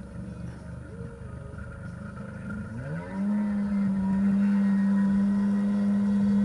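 Personal watercraft (jet ski) engine running low, then revving up in a rising pitch about three seconds in and holding a steady high note as it pulls a water skier up and out of the water.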